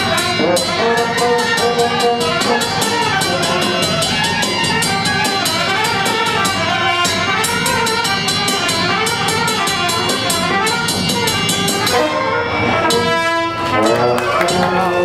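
Brass band with trumpets playing a lively folk tune over a steady drumbeat. Near the end the drum drops out and the brass holds sustained notes.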